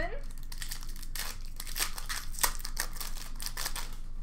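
Foil wrapper of an Upper Deck hockey card pack being torn open and crinkled by hand: a quick run of crackling rips for about three seconds.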